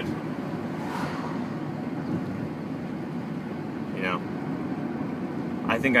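Steady road and engine noise of a moving car, heard from inside the cabin. A short vocal sound comes about four seconds in.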